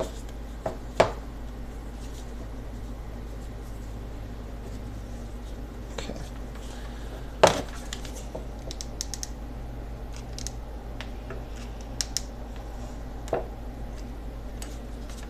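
Handling noise from wrapping a pleather strip around a bow handle: a few sharp knocks and taps, the loudest about seven and a half seconds in, with light clicks between, over a steady low hum.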